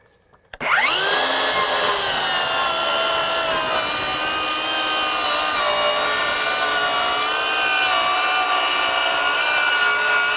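DeWalt DCS570 20V 7¼-inch cordless circular saw with a thick-kerf blade starting up about half a second in, its motor whine rising, then cutting steadily lengthwise along a board of dimensional lumber, the pitch easing slightly lower under load.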